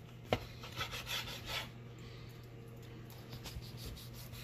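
A Cutco kitchen knife sawing through a smoked bacon-wrapped sausage log on a cutting board: soft rasping strokes, with one sharp tap about a third of a second in.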